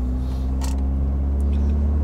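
Cabin drone of a BMW E30 316i's four-cylinder engine and road noise while cruising: a steady low hum, with one light click under a second in.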